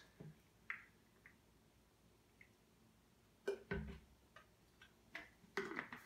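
Faint clicks of plastic bottle caps and small plastic sample cups being handled on a wooden table, with a soft knock about three and a half seconds in.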